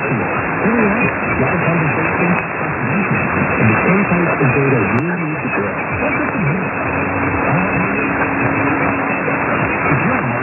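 Weak AM medium-wave reception of 1290 kHz WTKS Savannah on a software-defined radio in synchronous AM mode: a voice half-buried in static and interference, in narrow-band audio. A steady low tone joins about seven seconds in.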